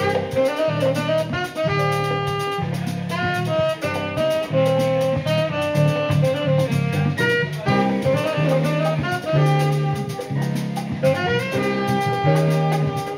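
Live Latin jazz quintet: tenor saxophone playing the melody over piano, bass, drum kit and hand percussion, with a steady beat.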